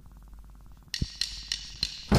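Amateur 1980s rock band recording in a lull: faint steady hum, then about a second in a few sharp percussion hits, roughly three a second, one with a low thud, leading back into the music.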